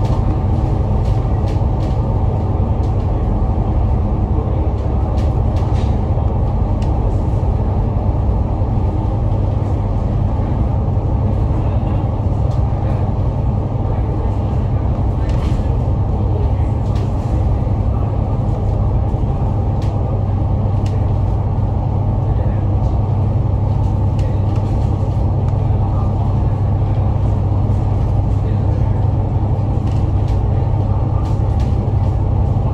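Alexander Dennis Enviro500 MMC double-decker bus cruising at a steady highway speed, heard inside the cabin: a constant heavy low engine and road rumble with a steady drone and occasional faint rattles.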